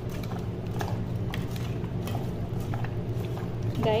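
Hands mixing raw mutton pieces in a bowl: irregular small wet clicks and squishes.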